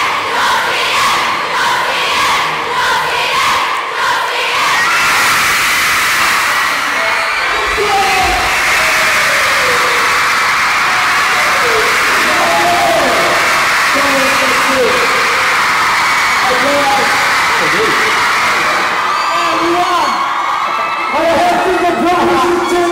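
Large concert crowd of mostly young female fans cheering and screaming. The noise pulses about twice a second for the first four seconds, then becomes one steady, loud scream with single shrieks rising and falling above it.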